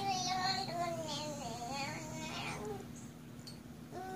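A toddler's voice in a long, wavering, wordless sing-song that trails off about two and a half seconds in. A faint steady hum runs underneath.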